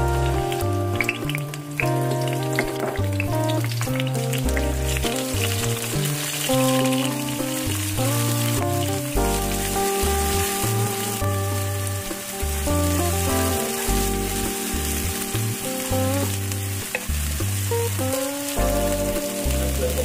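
A chopped chili paste sizzling in hot oil in a non-stick wok as it is tipped in and stirred with a wooden spatula. Background music with a steady bass line plays underneath.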